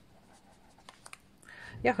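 Felt-tip marker writing on notebook paper: faint scratching of the tip across the page.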